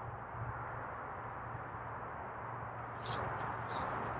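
Quiet outdoor yard ambience with a faint steady high insect drone. About three seconds in come brief rustles and scuffs of footsteps on grass strewn with fallen leaves.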